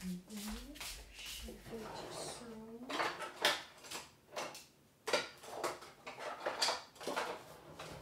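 Some wordless vocal sounds in the first couple of seconds, then a series of short scraping and clinking strokes of a kitchen utensil against a mixing bowl, about two a second.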